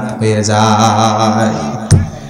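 A man's voice holding one long, steady chanted note, the sung style of a Bengali waz sermon. A short sharp sound comes just before the end.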